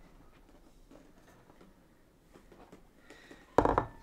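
Quiet room tone, then a single brief, loud thump near the end.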